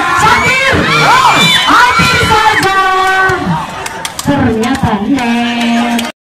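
A crowd of spectators shouting and cheering, many voices at once with long rising and falling calls. It eases off after about three and a half seconds, leaving one voice holding a steady call near the end.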